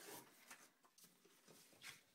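Faint scrape of a paper trimmer's sliding blade drawn along cardstock at the start, then a soft scuff of the cut card being slid across the table near the end.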